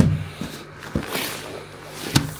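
A sealed plastic bag of ADA Amazonia aqua soil handled in its cardboard box: a light knock about a second in, then a brief crinkle of the plastic, over a low steady hum.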